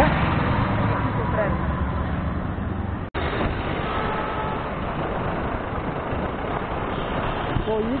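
Steady road and traffic noise while riding, a dense rushing haze strongest in the low end. It drops out abruptly for an instant about three seconds in.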